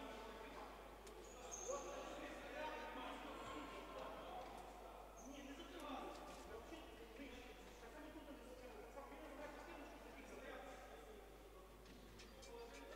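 Faint, indistinct talk of several people's voices in an indoor sports hall, with no clear words.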